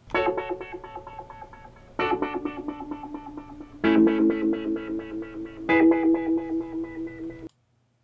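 Sampled piano chords played through Studio One's Autofilter plugin with a fast square-wave LFO, the filter snapping open and shut so each chord is chopped into rapid pulses. Four chords come in about two seconds apart, and the playback cuts off suddenly near the end.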